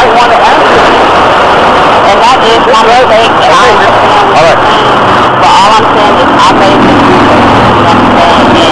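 Two people talking, their voices partly buried under loud, steady noise.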